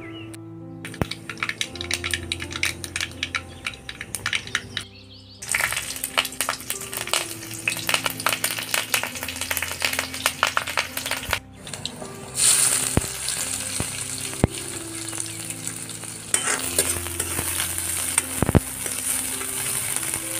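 Mustard seeds crackling and popping in hot oil in a kadai: a dense run of sharp crackles. About twelve seconds in, it turns to a louder, steady sizzle of frying, and by the end chopped onions are being stirred in the oil with a spoon.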